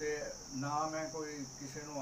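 A man talking over a steady, high-pitched insect drone that does not change.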